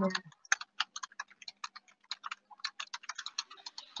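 Keyboard typing: quiet, quick, irregular key clicks, several a second, over a faint low hum.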